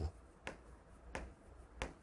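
Three short, faint taps of a writing stick striking the board, about two-thirds of a second apart, as digits are written.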